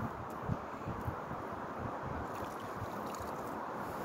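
Steady wind noise rushing over a phone's microphone, with a few faint low bumps in the first second.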